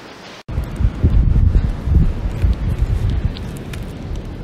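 Wind buffeting the microphone: a loud, gusting low rumble that starts abruptly about half a second in.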